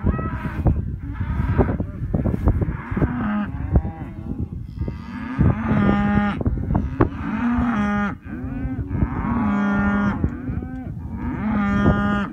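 Hereford cattle mooing: about five long calls one after another, each around a second, over a steady low rumble.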